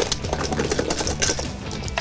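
Wire whisk beating fast against a stainless steel bowl, a rapid run of clicks, as dry ice is whisked into custard to freeze it into ice cream. Background music plays underneath.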